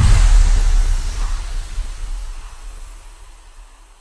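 An electronic sound effect: a deep rumbling boom with a hissing whoosh that starts suddenly and fades away over about four seconds, under a particle logo animation.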